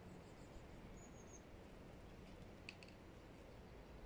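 Near silence: a quiet outdoor background with a few faint, high bird chirps in the first second or so and one short chip later on.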